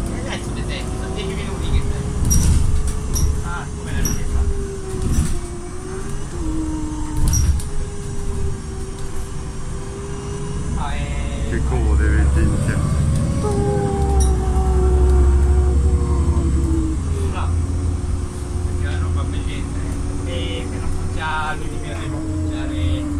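Inside a moving city bus: the drivetrain hums steadily, rising and falling in pitch as the bus speeds up and slows, over a low road rumble, with scattered rattles and clicks from the cabin.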